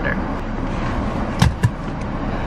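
Steady noise inside a parked car with its engine and air conditioning running, and two sharp clicks close together about a second and a half in.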